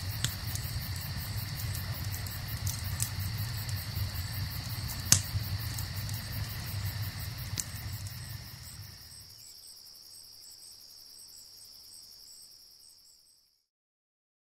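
Crickets chirping in a steady high trill over a crackling fire with a few sharp pops. The fire sound drops away about nine seconds in, and the crickets fade out near the end.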